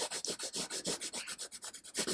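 Soft, dark graphite pencil rubbing across paper in quick back-and-forth shading strokes, about five a second, pressed down hard to lay in solid black.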